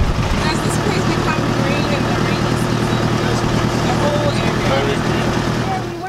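A vehicle engine running steadily with a low rumble, with faint voices over it. The engine noise falls away at the very end.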